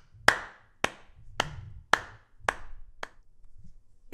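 One person clapping slowly, six claps about half a second apart, each with a short room echo.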